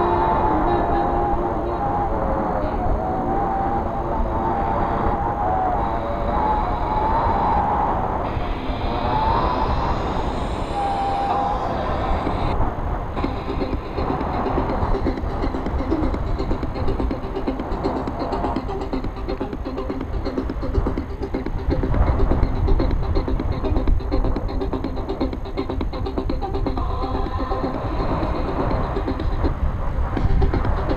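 Music with a wavering melody over a steady rush of wind buffeting an action camera's microphone during a paraglider flight.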